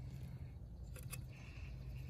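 Quiet handling of a plastic laser printer laser-unit housing and its circuit board, with one light click about a second in over a low steady background hum.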